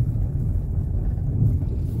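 Low, steady rumble of a car driving along a street of interlocking paving stones, heard from inside the car: engine and tyre noise.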